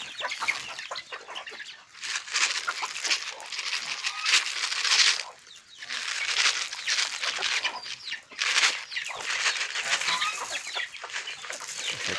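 A flock of chickens clucking and squawking as they crowd around grain at feeding time. Many short overlapping calls mix with brief noisy flurries.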